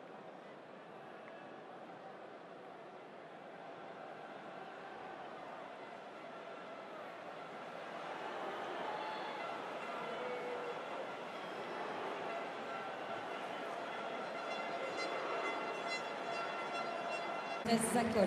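Rugby stadium crowd noise: a dense, steady wash of many voices that grows louder about halfway through as the attack breaks clear, with held tones sounding over it in the last few seconds.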